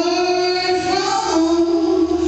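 A woman sings a gospel song into a handheld microphone, holding a long note that steps down to a slightly lower note a little past halfway.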